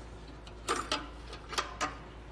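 Sharp plastic clicks from the Saris MHS rack's wheel strap as it is released and moved clear, in two pairs about a second apart.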